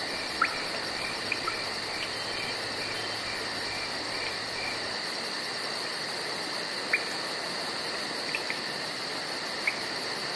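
Steady chorus of meadow insects: a continuous high trill with an even higher buzz pulsing about five times a second, and a few brief sharp chirps scattered through.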